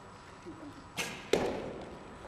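A bow being shot on the line: a sharp snap of the string about a second in, then a louder thud about a third of a second later, ringing briefly in the hall.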